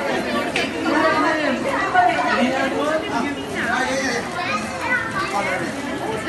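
Overlapping chatter of adults and young children talking at once, with no single clear voice.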